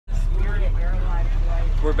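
Steady low rumble of a school bus's engine and road noise, heard from inside the passenger cabin, with faint chatter from other passengers.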